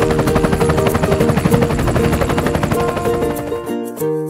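Background music with a cartoon helicopter sound effect: a rapid rotor chop. The chop cuts off just before the end, leaving the music.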